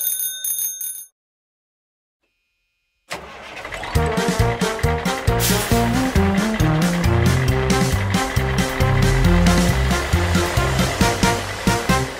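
A bright bell-like chime rings out and stops about a second in, followed by about two seconds of complete silence. Then an upbeat children's song starts, with a steady beat.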